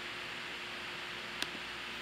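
Steady background hiss of room tone with a faint hum, broken by a single sharp click about one and a half seconds in.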